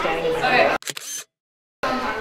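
Indistinct talk of people in a crowded indoor hall. It cuts off abruptly a little under a second in, and after a short broken fragment there is dead silence for about half a second before the talk resumes.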